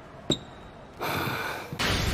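A volleyball bounced once on a gym floor, one sharp bounce a third of a second in, the last of a slow pre-serve dribble. A rushing noise follows in the second half and swells louder near the end as the serve is struck and the ball flies.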